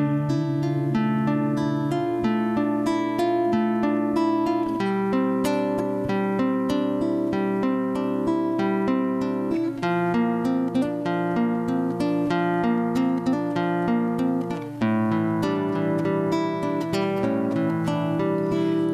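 Nylon-string acoustic guitar fingerpicked, playing an instrumental melody over held chords, with no singing.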